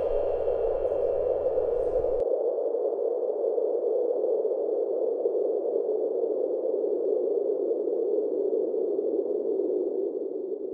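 Soundtrack music with a bass line cuts off about two seconds in, leaving a steady, muffled rushing noise with two faint high tones held above it.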